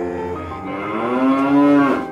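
A long, low animal call, rising in pitch over about a second and a half and growing louder before it cuts off suddenly.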